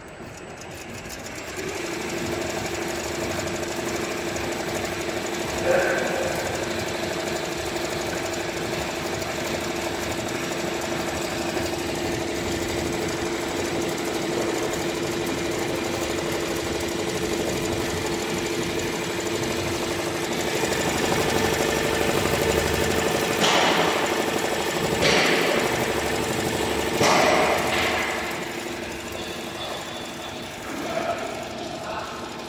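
Richpeace cap embroidery machine stitching on a cap, its needle bar running at a steady fast rate with a steady two-tone hum; it starts up about two seconds in. Several louder clacks come in the last few seconds.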